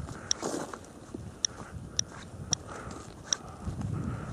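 Hand-held radiation dosimeter chirping at irregular intervals, about five short high-pitched chirps, each one a detected particle, as it measures the radiation level of about 0.33 microsieverts per hour, over faint handling rustle.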